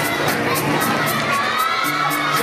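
A gymnasium crowd cheering and shouting over music with a steady beat.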